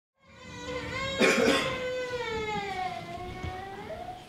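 A violin holds one long note that slides slowly down in pitch, then steps up to a higher note near the end. A short cough cuts in about a second in.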